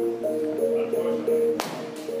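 Music playing throughout, with a single sharp crack of a baseball bat hitting a ball about one and a half seconds in.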